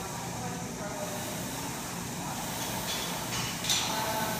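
Concept2 indoor rower's air-resistance flywheel spun up by hard sprint-start strokes: a steady whirring rush of air, with a sharper, louder surge near the end.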